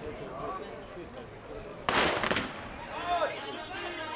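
Starting gun fired once for a sprint start about two seconds in: a single sharp crack with a short echo.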